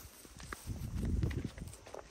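Footsteps on a dirt footpath: irregular taps and scuffs, with a louder stretch of low rumbling about a second in.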